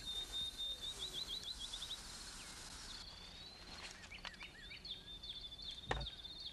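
Faint open-air ambience with a small bird singing: a quick run of high, repeated chirps in the first two seconds, then scattered high calls. A short click sounds just before the end.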